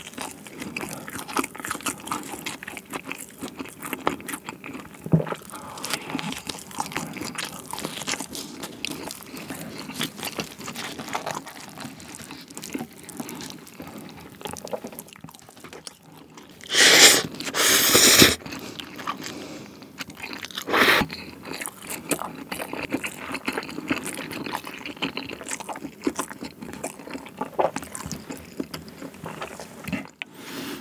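Close-miked chewing of sweet potato pizza, with crunching crust, crackles and wet mouth sounds. About 17 seconds in come two loud, breathy huffs, a reaction to a mouthful of unexpectedly hot cheese, and a shorter one a few seconds later.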